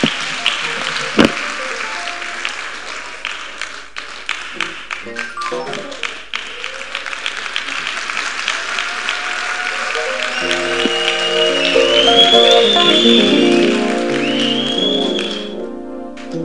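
A congregation applauds, with many hands clapping. Music or group singing swells in about ten seconds in and grows louder.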